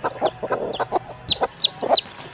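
Broody hens clucking low, with a chick peeping in quick, high, falling peeps that start a little past halfway.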